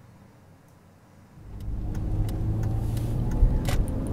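Car engine and road rumble heard from inside the cabin while driving: a steady low rumble and hum that comes in about a second and a half in, after quiet room tone, with a few faint clicks.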